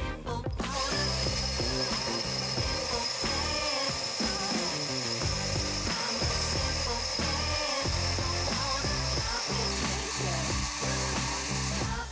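Cordless drill spinning a 1-3/8-inch diamond core bit into a wet quartz countertop: a steady high grinding whine that starts about a second in and stops near the end.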